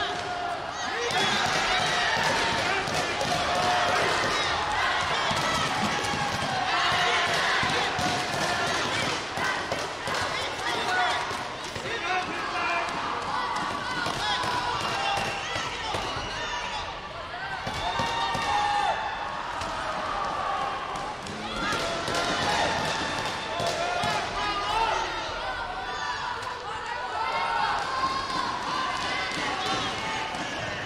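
Voices calling out throughout in a large hall, mixed with repeated thuds of taekwondo kicks landing on body protectors and feet striking the mat.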